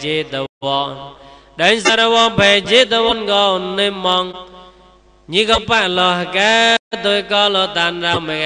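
A Buddhist monk's voice chanting in a melodic, drawn-out intonation, with long held and gliding notes and two brief breaks.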